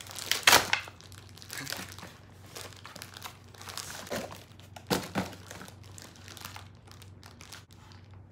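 Brown paper packaging crumpled and torn open by hand, in irregular rustles with the loudest rips about half a second in and again near five seconds.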